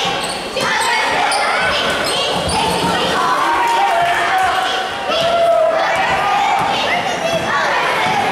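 Basketball bouncing on a gym floor as players dribble and run the play, with players and spectators shouting, all echoing in a large hall.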